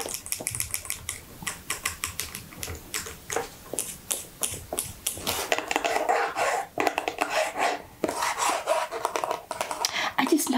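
Long acrylic fingernails tapping quickly and irregularly on the cardboard box of Miss Dior body milk, a dense run of sharp little clicks.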